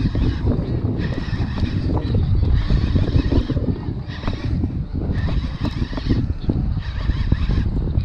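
Conventional lever-drag jigging reel being cranked, its gears whirring in short stretches that come and go about every second or so, over a steady low rumble from the boat.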